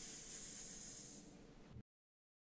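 A person sounding out the letter S: a sustained "sss" hiss, the first sound of "swish", held for about a second and a half and fading before it is cut off abruptly near the end.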